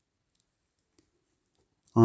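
Near silence with a few faint, tiny clicks, then a man's reading voice begins right at the end.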